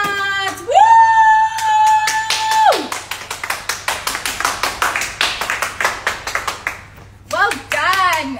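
A woman's voice holds a long, drawn-out high note for nearly three seconds, then she claps her hands quickly for about four seconds.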